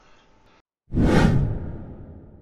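A whoosh sound effect for the channel's intro title card: it starts suddenly about a second in and fades away over a second and a half.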